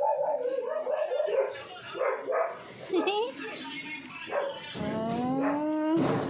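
A dog whining and howling: short wavering cries in the first few seconds, then one long rising howl near the end.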